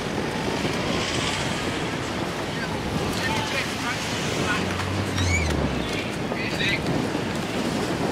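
Wind buffeting the microphone over open-air river ambience, with a few short high chirps in the middle and a brief low hum about five seconds in.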